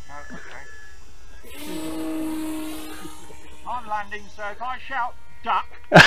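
Brushless electric motor and propeller of a radio-control model trainer plane buzzing in flight. The buzz swells as the plane passes about two seconds in, then fades.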